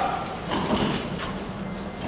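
A'Van Cruiseliner camper trailer's hinged roof panel being pushed up by hand, with a few brief noises from the panel as it rises.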